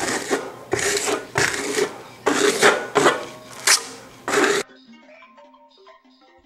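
Steel trowel scraping plaster across a sandstone-textured wall in about seven quick strokes. About three-quarters of the way in, the scraping cuts off suddenly and faint background music follows.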